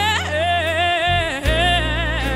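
Gospel music: a singing voice holds long notes with wide vibrato, moving to a new note about one and a half seconds in, over sustained low bass notes from the band.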